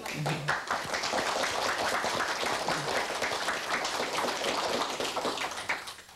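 Audience applauding: many hands clapping together, steady throughout and breaking off just before the end.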